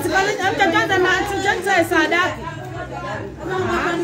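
Several women's voices talking and calling out over one another, loudest in the first two seconds.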